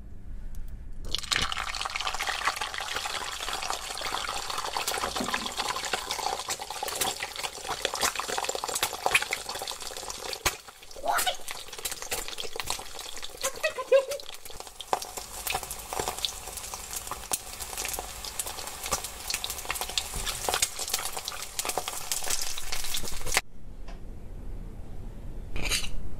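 An egg frying in hot oil in a nonstick wok: a steady crackling sizzle full of small pops of spitting oil, starting about a second in as the egg goes into the pan. A short squealed exclamation rises above the sizzle around the middle, and the sound cuts off shortly before the end.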